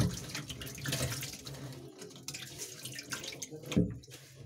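Water poured from a plastic bucket splashing into a shallow tub, loudest at the start and dying away into gentle sloshing and drips, with one more brief splash near the end.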